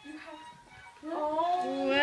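A high voice singing long, gliding notes, coming in about a second in after a quiet start.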